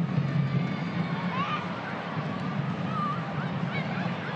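Steady crowd noise from a soccer stadium, with a few faint distant shouts rising above it.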